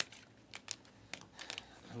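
Trading cards being handled and flipped through in the hands: a handful of soft, sharp clicks and light rustles of card stock as cards slide off the stack.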